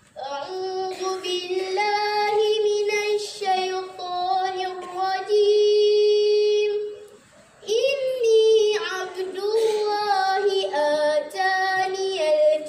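A schoolgirl's voice reciting a Quranic verse in melodic tarannum style, with ornamented turns in pitch. One long note is held near the middle, and there is a short breath pause about seven seconds in.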